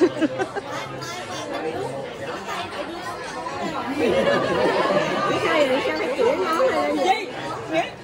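Several women talking and laughing over one another at once in lively group chatter, densest about halfway through.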